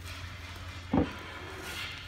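A cardboard package being handled while it is opened: one short knock about a second in, over a steady low hum.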